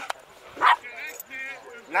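A dog barks once, short and sharp, about two-thirds of a second in.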